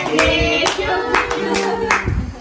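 Hands clapping at an uneven pace, about six claps, under a few voices singing held notes.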